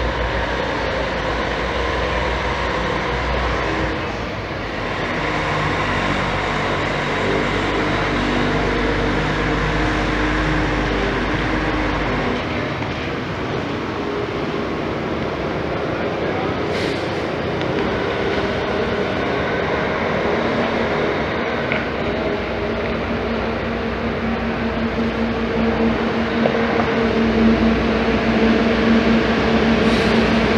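Diesel engine of an intercity coach running as the coach drives slowly across the terminal yard and pulls up close, its engine note growing louder near the end.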